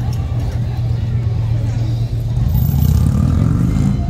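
Motor traffic passing: a heavy vehicle's low engine rumble that builds louder toward the end, with people talking over it.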